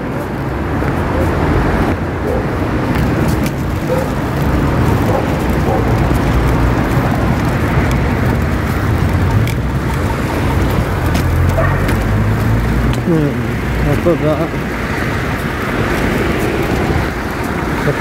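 Steady low rumble of outdoor street noise, with a short spoken word near the end.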